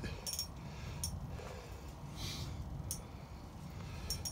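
A few faint, brief high clicks from a spinning reel as its handle is turned, over a steady low rumble.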